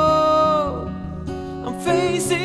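Acoustic guitar strummed in steady chords under a man's singing voice, which holds one long note for about the first half second, drops out, and comes back in just before the end.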